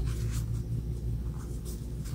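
Faint rustling and soft scratching of a crochet hook working through plush super bulky yarn, over a steady low hum.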